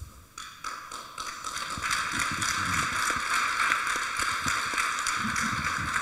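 Audience applauding: many hands clapping, building over the first couple of seconds and then holding steady.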